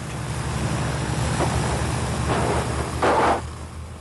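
Piston engines of a Canadair Argonaut airliner, throttled back, droning steadily under a rush of airflow noise as the aircraft slows toward the stall. The rush swells louder a little after three seconds in.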